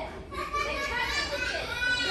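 A child's high-pitched, shrill voice held for about a second and a half, with other young voices under it.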